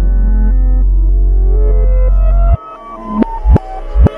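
Hip-hop music played in reverse. A long, loud, deep bass note with held synth tones cuts off abruptly about two and a half seconds in. It is followed by reversed drum hits that swell up and stop sharply.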